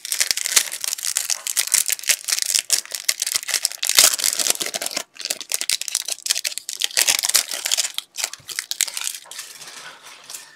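Trading-card pack wrapper crinkling as cards are pulled out and slid through the hands, a dense run of small crackles and clicks that thins out near the end.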